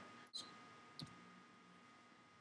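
Near silence: room tone with two faint clicks, one about a third of a second in and a sharper one about a second in.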